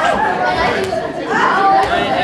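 Boys chattering and calling out in a group, with short sharp knocks about once a second from a Headis rally: the rubber ball being headed and bouncing on the table.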